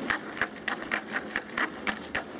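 Skateboard rolling over rough concrete, its wheels giving a quick, uneven run of clicks, about five a second.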